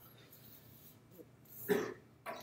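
A person briefly clears their throat once, about one and a half seconds in, after a quiet stretch.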